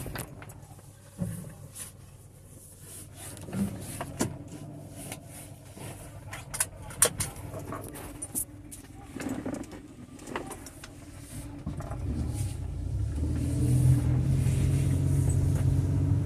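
Inside a Ford truck cab, the engine runs quietly under scattered clicks and knocks. From about twelve seconds in, the engine's low hum grows louder as the truck pulls away slowly.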